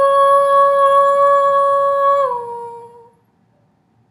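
A woman's unaccompanied voice holding one long sung note on the word "new". It steps down slightly in pitch a little over two seconds in and fades out about a second later.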